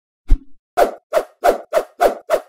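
Cartoon-style plop sound effects of an animated logo intro: one short pop, then a quick, even run of plops, about four a second.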